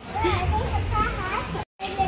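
A young child's high-pitched babbling over a low steady hum; it cuts off abruptly near the end.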